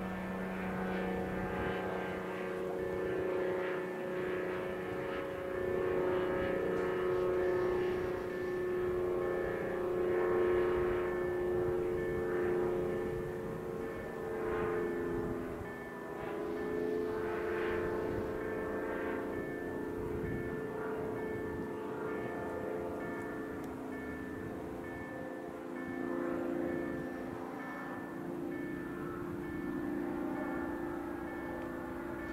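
Level crossing warning signal ringing on and on while the red lights show, over a steady low engine drone whose pitch shifts slightly.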